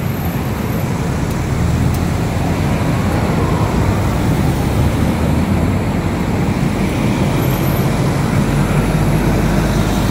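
Steady traffic noise from vehicles on a multi-lane toll road.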